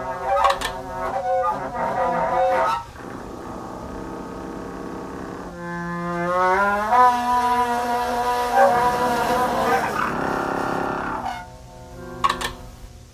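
The Honkpipe, a homemade hose-and-pipe contraption, sounding pitched honking notes. A run of short notes comes first, then after a quieter stretch a long note slides up in pitch and is held for several seconds before dying away near the end.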